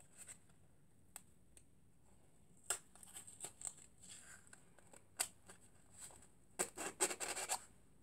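A small wooden box being worked open by hand: scattered scrapes and clicks of wood rubbing on wood, then a quick flurry of clicks and scrapes near the end as the lid comes free.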